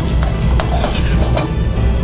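A metal spoon stirring and scraping rice with cream in a hot frying pan, the food sizzling, with a few sharp clinks of spoon on pan, the clearest about half a second and a second and a half in.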